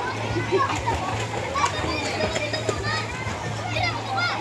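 Children's voices calling and chattering as they play in a shallow swimming pool, with a steady low hum underneath.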